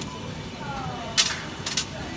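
50p coins being pushed by hand into the slot of a supermarket coin-counting machine, about three sharp metallic clinks as they drop in.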